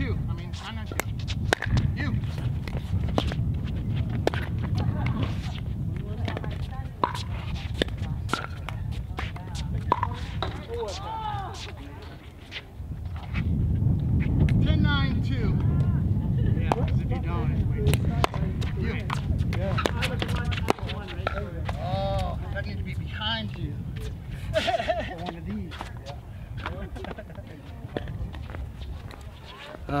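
Pickleball paddles striking a plastic ball in rallies: sharp pops at irregular intervals, over low wind rumble on the microphone.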